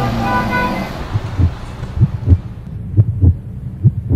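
Traffic noise with a car horn tone fades out over the first second. A heartbeat sound effect follows: pairs of low lub-dub thumps, about one beat a second.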